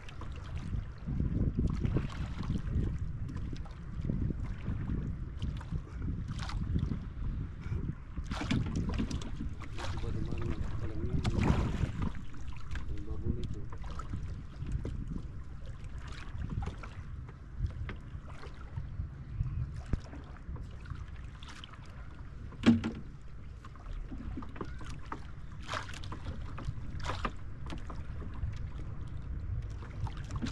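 Paddles dipping and splashing at the sides of a small wooden outrigger canoe, in uneven strokes, over a steady low rumble of wind on the microphone. A single sharp knock about two thirds of the way through.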